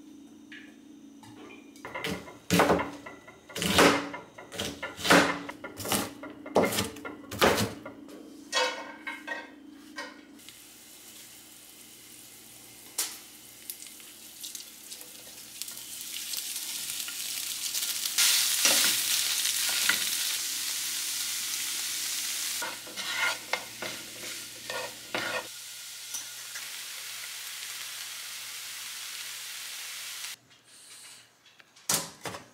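Knocks and clatters of utensils against a nonstick frying pan for the first ten seconds or so, then crumbled tofu and chopped red onion sizzling in hot oil. The sizzle is a steady hiss that swells to its loudest a little past the middle and eases off somewhat for the last few seconds.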